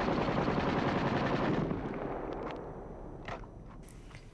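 Rapid machine-gun fire, a dense rattle that is loudest at first and fades away over about three seconds, with a few isolated cracks near the end.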